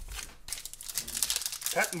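Foil wrapper of a hockey card pack crinkling as it is picked up and handled, a dense crackly rustle that runs until a short spoken word near the end.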